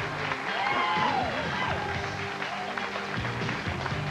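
Music playing over a studio audience cheering and clapping.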